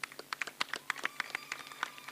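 Scattered applause: a few people clapping unevenly, a quick run of sharp hand claps.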